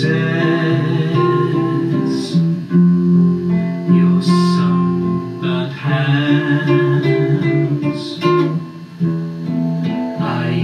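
Nylon-string classical guitar and electric bass playing an instrumental passage together, plucked guitar notes over held bass notes.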